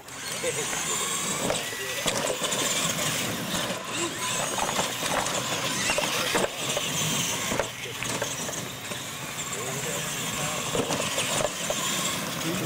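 Two R/C monster trucks racing flat out across a dirt track: their electric drivetrains whine and their big tyres scrabble and churn through loose dirt.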